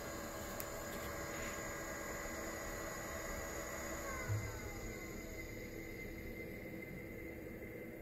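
Steady hum of a running heat-pump unit with its blower on a variable-frequency drive, carrying several steady tones. About four seconds in there is a short low thump, after which some of the tones slide down in pitch and the sound eases off slightly.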